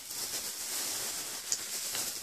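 Steady hissing rustle of packaging and headphones being handled, with a single sharp click about one and a half seconds in.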